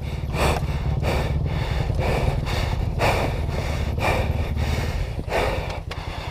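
Heavy panting breaths, about two a second, over the low, even pulsing of a 2016 Kawasaki KX450F's single-cylinder four-stroke engine idling.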